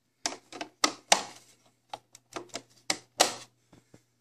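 Plastic toy parts being handled: an irregular run of sharp clicks and taps, about fifteen in four seconds, from a Playmobil refuse truck's hard plastic pieces being pressed and fitted together.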